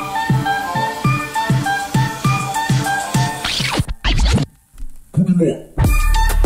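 Background music: a plucked-string tune over a steady beat that breaks off about three and a half seconds in with a whoosh and a choppy stretch of scratch-like effects, before a new track starts near the end.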